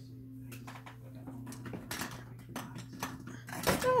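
Scattered soft clicks and knocks of small makeup items being handled while rummaging for lip liners, over a steady low hum. A short exclamation comes near the end.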